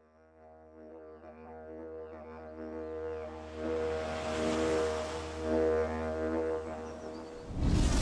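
Didgeridoo drone as intro music: one low held note with steady overtones, fading in from silence and growing louder, then stopping shortly before the end.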